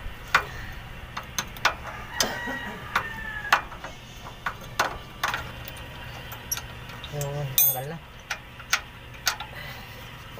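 A wrench working a 14 mm bolt loose from the air dryer's mounting bracket: irregular metallic clicks and taps, with short squeaks of the bolt turning about two to three seconds in.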